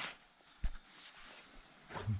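Low background hiss with a single short knock about two-thirds of a second in.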